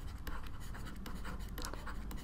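A stylus writing on a tablet: a quiet run of short, scratchy pen strokes as words are handwritten.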